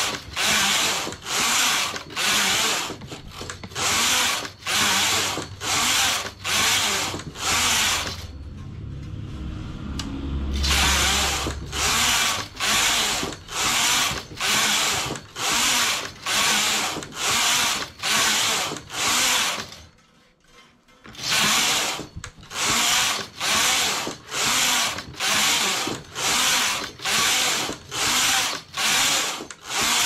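Domestic knitting machine carriage being pushed back and forth across the metal needle bed, knitting one row with each pass: rhythmic sliding, rattling strokes about one every 0.7 seconds. About eight seconds in, the strokes stop for a few seconds and a low hum takes their place. They stop again briefly near the twenty-second mark.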